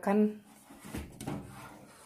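A metal springform cake pan being handled, with one light knock about a second in, and a silicone pastry brush rubbing oil around inside it.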